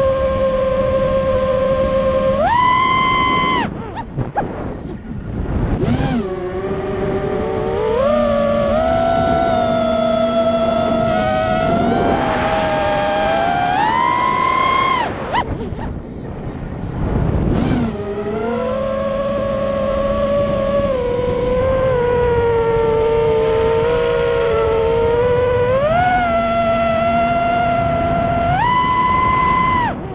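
Brushless motors and propellers of an FPV racing quadcopter whining as heard from its onboard camera, the pitch jumping up and gliding down with throttle punches. Twice the whine drops away briefly as the throttle is cut, then comes back.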